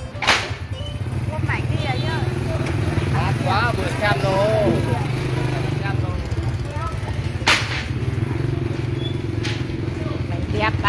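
Motorbike engine running steadily under people talking, with two sharp knocks, one just after the start and one about three quarters of the way through.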